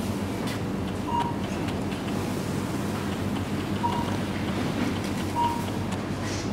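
Supermarket background: a steady hum and hiss of the store, with three short electronic beeps at one pitch, about a second, four seconds and five and a half seconds in.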